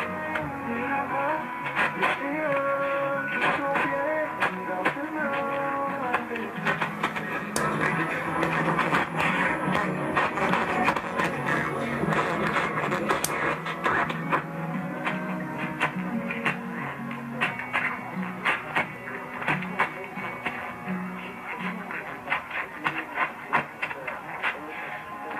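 French-language music and talk from AM station CBKF-2 (860 kHz) playing through a Hammarlund SP-600 shortwave receiver's speaker. The sound is narrow and muffled, with crackling splatter from the adjacent 50 kW station 850 KOA.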